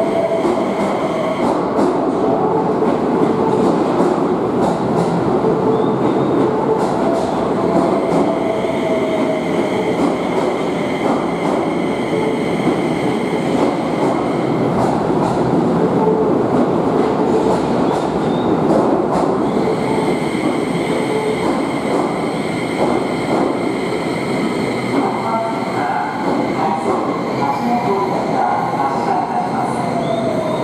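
A Keio 5000-series electric train running past along an underground station platform, its wheels and motors giving a loud, steady rumble. A high steady whine sounds over it now and then, most continuously in the last third.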